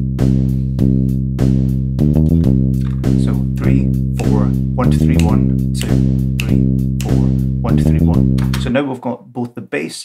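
MIDI bass patch and drum beat looping a bar of 19/16: a long held bass note with steady drum hits, then a quick run of three short rising bass notes that accentuate the three extra sixteenth notes, repeating three times. The playback cuts off suddenly near the end.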